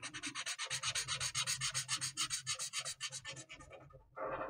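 Felt-tip marker scribbling on paper: quick, even back-and-forth colouring strokes, several a second, stopping just before the end.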